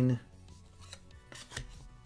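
Glossy trading cards sliding and rubbing against each other as the front card of a hand-held stack is moved to the back, with a few short scrapes in the second half.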